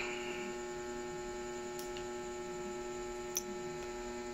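Steady electrical mains hum made of several steady tones, with a single faint click a little over three seconds in.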